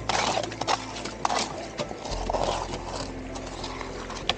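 A plastic scoop scraping and knocking against gravel and stones under shallow creek water, with splashes. It gives a string of irregular sharp clacks, the loudest about a second and a quarter in. Steady background music runs underneath.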